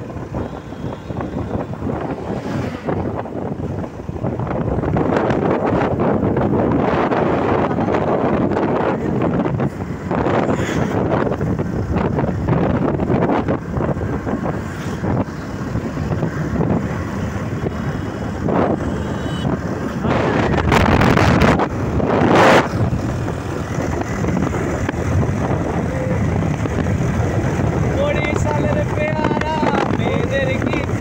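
Wind buffeting the microphone of a moving motorcycle, over the bike's engine and road noise, with louder gusts about twenty seconds in.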